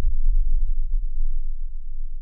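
A deep sub-bass boom, a trailer sound-design hit under the title card, its low rumble slowly dying away.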